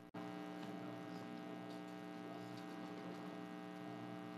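Steady electrical hum of several held tones that switches on abruptly just after a brief dropout, then holds evenly. It comes over a live-stream audio line at a moment the host calls a bad transmission.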